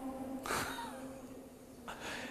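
A man's breathy laugh: a short, noisy exhale about half a second in and another starting near the end, over a faint steady hum.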